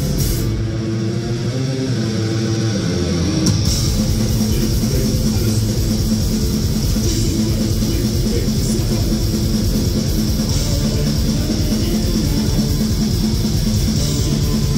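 Live heavy metal band playing loud: distorted electric guitars, bass guitar and drum kit, heard through a phone microphone in the crowd. The drums drop out for a few seconds near the start, leaving the guitar riff, then the full band comes back in at about three and a half seconds with fast, dense drumming.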